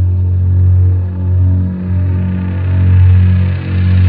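Doom/sludge metal: a heavy, droning low distorted note held under the music, swelling and dipping in slow waves. The higher guitar noise drops away for the first two seconds or so, then fills back in.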